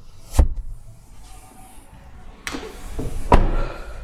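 Car door sounds from a Kia Venga. A sharp knock comes about half a second in, then a thud, and a louder door slam about three seconds in.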